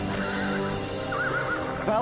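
Horse whinnying, a high quavering call heard twice, over background music with long held notes.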